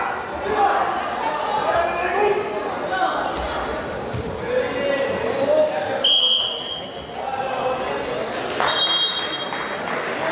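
Voices and calls in a large sports hall, broken about six seconds in by one short, high referee's whistle blast that stops the wrestling bout. A second, thinner whistle tone comes near the end.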